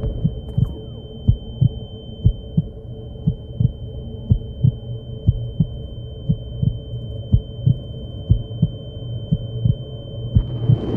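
Heartbeat sound effect: a double thump about once a second over a low hum, with a steady high-pitched ringing tone held throughout. This is the soundtrack's cue for a character overwhelmed by the heat of the hot wings.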